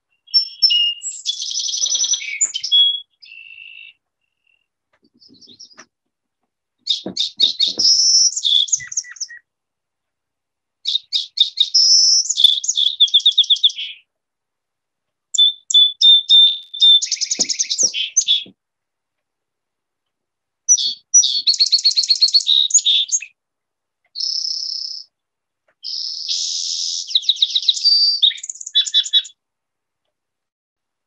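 Recorded song sparrow singing a series of about six songs, each two to three seconds long and a few seconds apart. Each is a run of quick repeated notes and trills, and each differs slightly from the last.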